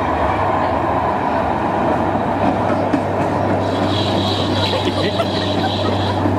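Zierer Tivoli Large family roller coaster train running along its steel track, a steady rolling rumble. A higher rattling hiss joins about four seconds in.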